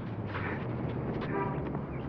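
Steady outdoor background noise, with a brief faint voice about one and a half seconds in.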